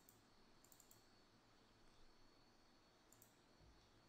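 Near silence with a few faint computer mouse clicks, in small clusters about a second in and again about three seconds in.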